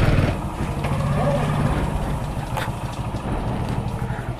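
Motorcycle engine running at low speed, a steady low hum of rapid even firing pulses.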